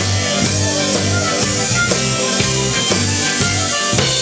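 Live blues-rock band playing, with an electric bass guitar line prominent underneath and drums keeping a steady beat of about two hits a second.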